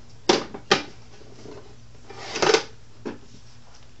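A few sharp clacks and rattles of metal hand tools being handled as a pair of pliers is picked up: two quick knocks within the first second, a short rattling cluster about two and a half seconds in, then a lighter knock.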